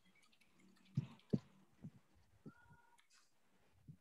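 Mostly quiet room tone with four soft knocks in quick succession, the first two loudest, and a short faint steady tone a little past the middle.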